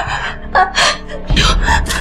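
A person gasping and breathing hard in quick, ragged rushes, in an acted scene of desperate craving for drugs. Low background music comes in about halfway through.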